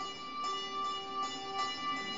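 Handbells ringing: a few strokes about every half second, each note sustaining and overlapping the next.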